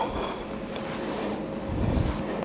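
Low rumble and rustle of movement noise, an arm and sleeve moving close to the microphone, swelling near the end.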